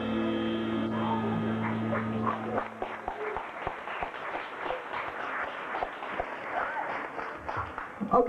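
The band's last chord rings out as a sustained low note for about two and a half seconds and then stops. After it comes a small club audience's scattered clapping, whoops and chatter.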